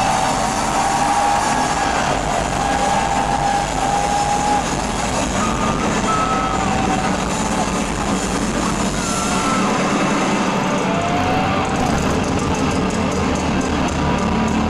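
Live rock concert sound heard from the audience: a loud, dense, steady wash of noise with no clear beat, with several short sliding tones over it.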